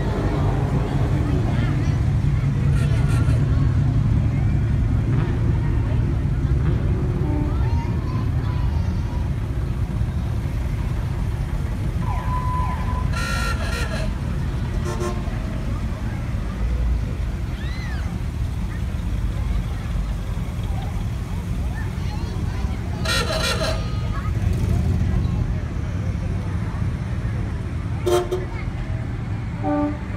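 Classic car engines idling and rumbling low as the cars drive slowly past, with short car horn toots about 13 seconds in and again about 23 seconds in.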